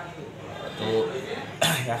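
A man speaking, with a brief cough near the end.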